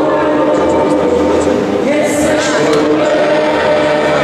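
A congregation of many voices singing a worship song together in long, held notes.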